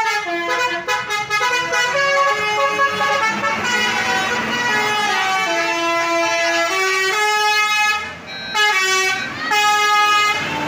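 Tour bus's musical multi-tone air horn (basuri) playing a tune of short held notes that step up and down in pitch, breaking off briefly near the end and starting again.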